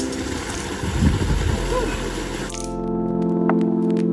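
Rushing, splashing water from the waterfall pool, a steady noisy wash with a low rumble, which gives way about two and a half seconds in to background music of sustained tones.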